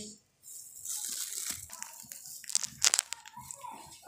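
Faint handling of a lidded aluminium pot on a gas stove: a few sharp clicks and rattles about two and a half to three seconds in, over a steady faint hiss.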